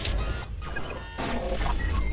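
Electronic logo-intro sound design: stuttering bursts of digital noise and short high bleeps over a deep, steady bass rumble.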